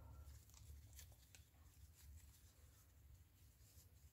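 Near silence: a steady low room hum, with a few faint soft rustles of hands squeezing small crocheted stuffed toys.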